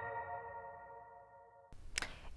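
The closing chord of a news programme's transition jingle: held tones that fade out over about a second and a half. Near the end it cuts to faint studio room noise.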